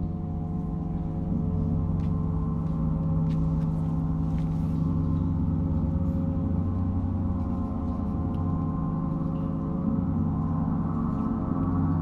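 Large suspended gong played continuously with soft felt mallets, a sustained wash of many overlapping tones that grows slightly louder in the first second and swells again near the end.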